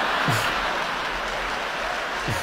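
Stand-up comedy audience laughing and applauding, a steady, even wash of crowd noise in response to a punchline.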